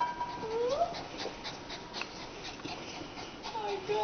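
A small dog whining while mating: a short whimper that rises in pitch just before one second in, then a few brief falling whimpers near the end, with faint clicks between.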